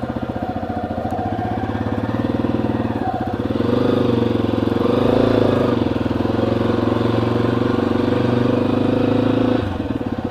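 Yamaha XT250's single-cylinder four-stroke engine running as the bike rides off at low speed, with a steady pulsing beat. It gets louder about three and a half seconds in and drops back briefly near the end.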